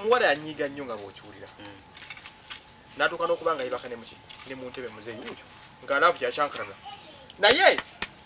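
Crickets chirring steadily in a single high band, with men's voices talking in short stretches over it.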